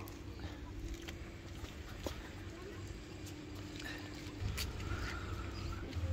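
Quiet street ambience with a steady low rumble and hum of motor traffic, a few faint clicks over it. The rumble grows a little past the middle.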